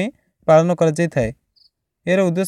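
A short spoken phrase from the narrator's voice, with brief pauses before and after it.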